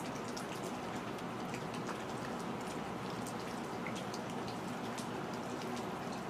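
Steady outdoor background noise with many scattered faint ticks.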